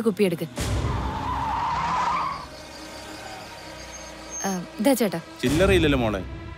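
A vehicle passes, with a wavering squeal, like tyres skidding, over a low rumble for about two seconds starting about half a second in, then dropping to a quieter background. Brief voice sounds come near the end.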